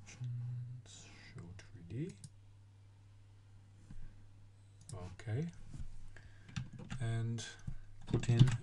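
Computer mouse clicks as options are ticked in a software dialog, with a few short wordless vocal sounds from the man at the computer. A steady low hum runs underneath.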